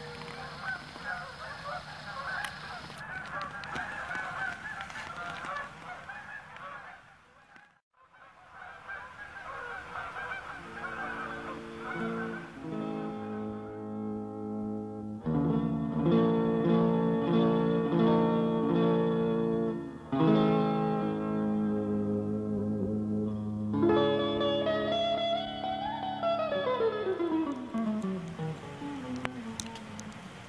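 A flock of geese honking, many calls overlapping, with a brief gap about eight seconds in. Partway through, instrumental music with held chords takes over, changing every few seconds and ending in a long falling glide in pitch.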